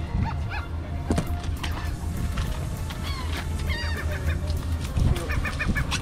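Birds calling: several short honking calls, with a quick run of repeated notes near the end, over a steady low rumble.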